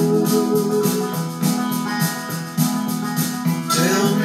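Background music: a song in an instrumental passage, with sustained chords over a steady rhythm.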